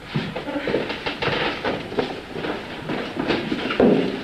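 Footsteps on a hard floor, about two steps a second, with a light clatter between them.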